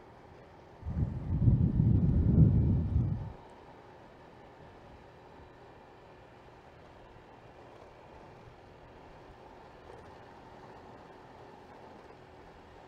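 A loud gust of wind buffets the microphone of a bike-mounted camera, a rough low rumble lasting about two and a half seconds that starts about a second in. Underneath it, a Honda Vario 125 scooter runs faintly and steadily along the road.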